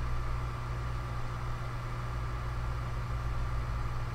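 Steady low hum with a faint constant whine and hiss over it. It is the background noise of a desk voice recording, with no speech and no other events.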